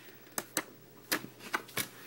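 Stiff patterned paper sheets of a double-sided designer paper pad being flipped, giving about five short, sharp paper flaps and snaps spread over two seconds.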